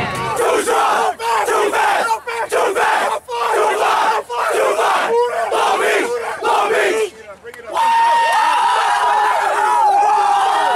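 A team of young men in a huddle shouting a chant together, in bursts about once a second. After a short break near the end, they join in one long, held group yell.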